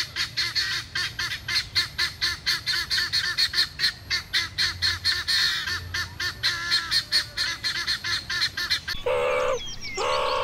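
Helmeted guineafowl calling in a rapid, harsh chatter, about four or five calls a second without a break for some nine seconds. Near the end it gives way to a few longer, lower-pitched calls of a different kind.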